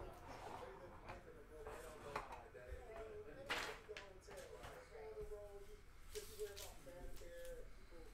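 Faint voices from a background TV, with short paper and foil-pack handling rustles. The loudest rustle comes about three and a half seconds in.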